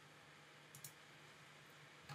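Near silence, broken by two faint computer mouse clicks in quick succession a little under a second in.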